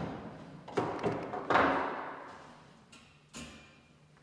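Folding metal attic ladder clanking as its sections are pulled down and unfolded by hand: several sharp knocks, each with a ringing tail, the loudest about one and a half seconds in.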